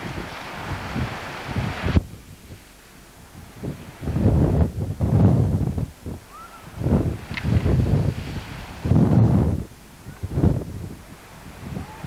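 Wind buffeting an outdoor camcorder microphone in uneven low gusts, each lasting up to a couple of seconds with quieter gaps between them. For the first two seconds there is a steadier rush of wind and breaking surf, which cuts off abruptly.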